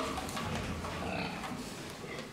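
Several fattening pigs in a barn pen grunting and giving short squeals, over steady barn noise and scattered knocks.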